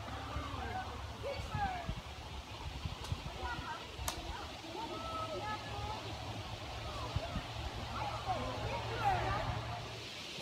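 Distant, indistinct voices, too faint to make out words, over a steady low hum, with a single sharp click about four seconds in.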